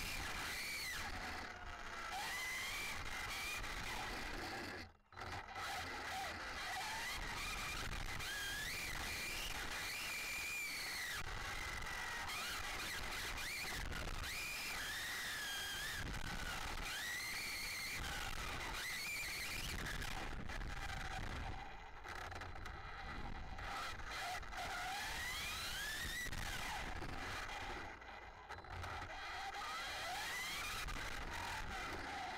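Brushless electric motor of an Arrma Limitless RC speed-run car whining, its pitch rising and falling as the throttle is worked, over steady wind and road noise picked up by a camera mounted on the car. The sound drops out briefly about five seconds in.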